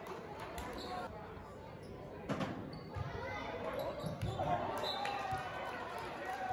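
A volleyball being played in a gym: one sharp hit of the ball about two seconds in, then duller thuds of passes about one and two seconds later, with players calling out near the end.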